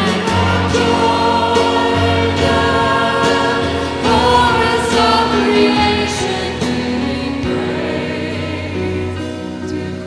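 Live worship song: a woman sings the lead at a microphone over a band with bass guitar, with other voices singing along.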